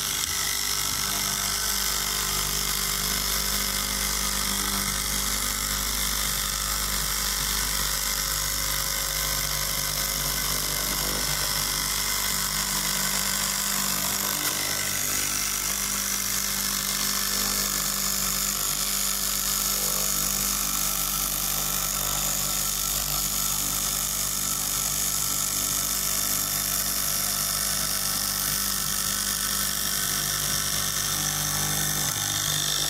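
Electric straight-knife cloth cutting machine running steadily, its upright reciprocating blade cutting through a stack of fabric layers.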